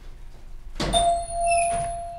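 A knock, then a small bell ringing out with one clear tone that fades slowly, and a second lighter strike just after.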